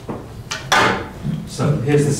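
A short scrape or knock of something being handled, the loudest sound, followed by low murmured voices.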